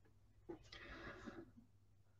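Near silence, with a faint breath from the speaker from about half a second in to about a second and a half.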